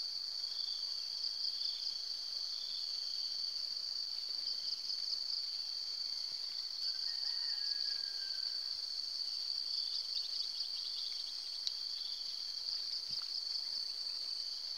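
Steady, high-pitched chorus of insects trilling continuously, with a few faint ticks about ten seconds in.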